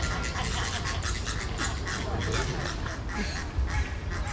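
A flock of flamingos honking, many short calls overlapping without a break.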